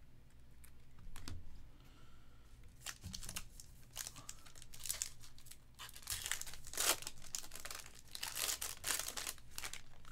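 Foil wrapper of a 2024 Panini Luminance Football trading-card pack being torn open and crinkled by hand, in irregular crackles that grow busier in the second half.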